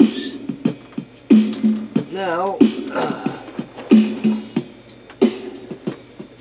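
A man's voice making rhythmic vocal sounds: short sung notes, some wavering in pitch, with clicks in between.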